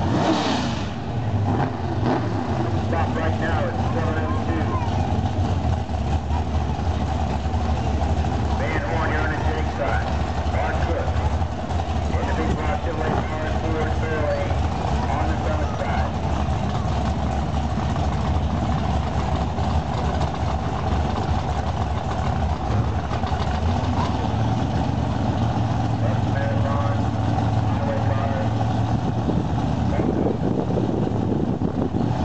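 The engines of two drag cars, a Chevy Nova and a second car beside it, idling while staged at the starting line, a steady low rumble that grows a little stronger in the last few seconds. Voices are heard faintly now and then.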